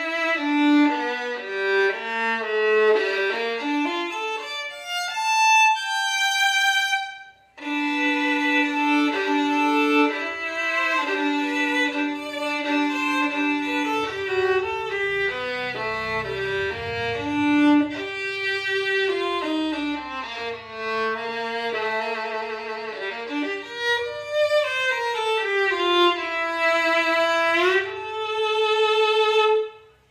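Solo 3/4-size German-made violin played with the bow, a melody with a fast run climbing high about five seconds in, a short break, then a slide down into a long held note near the end. Its tone is big and loud for a 3/4 instrument.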